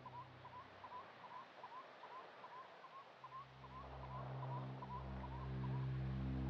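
A flock of flamingos calling: short, quiet, rising calls repeated evenly at about two or three a second. Sustained ambient music tones fade out within the first second and build back in from about three seconds in, becoming the loudest sound by the end.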